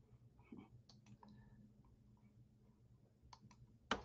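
Near silence: room tone with a few faint, short clicks, two of them close together near the end.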